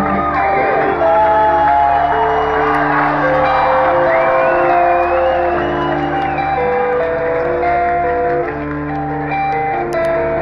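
A live progressive metal band playing a slow instrumental passage through a loud PA: long held guitar and keyboard notes step through a melody over sustained chords, with a few whoops from the crowd.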